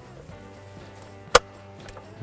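A single sharp plastic click a little over a second in as the dome light assembly snaps into place in the overhead console trim, followed by a much fainter tick.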